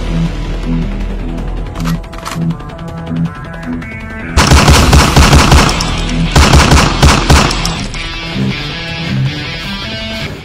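Two long bursts of automatic rifle fire, about four and a half and six and a half seconds in, each lasting about a second. Background music with a steady beat plays throughout.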